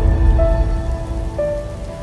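Channel logo intro music: held synth notes that change pitch every second or so, over a deep low rumble.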